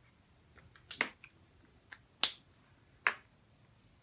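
Sharp clicks of plastic felt-tip markers being handled while colouring: a handful of them at uneven intervals, the loudest a little after two seconds and about three seconds in.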